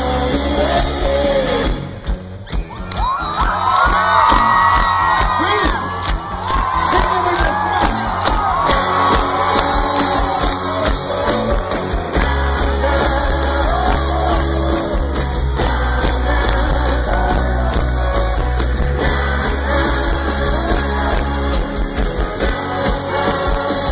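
Rock band playing live through a festival PA, heard from the audience: drum kit, electric guitars and singing. About two seconds in the bass drops out, leaving a stretch of drum hits and sliding voices, and the full band comes back in about halfway through.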